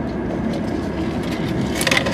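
Steady hum of a car's engine running at idle, heard from inside the cabin, with a short burst of noise near the end.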